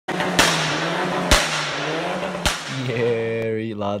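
Channel logo intro sound effects: a loud rushing noise broken by three sharp cracks about a second apart, then a steady low hum that bends down and cuts off near the end.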